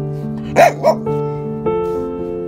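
Two short, sharp barks from a small long-haired miniature dachshund, about a third of a second apart and a little over half a second in, over background music.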